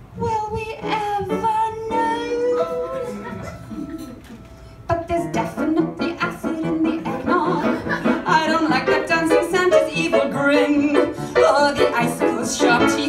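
A woman singing into a microphone: long held notes for the first few seconds, then a quicker run of shorter notes from about five seconds in.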